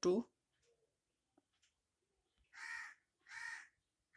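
A crow cawing twice in the background, two harsh calls a little under a second apart in the second half.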